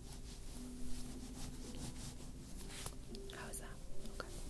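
Soft whispering, with faint steady tones held underneath.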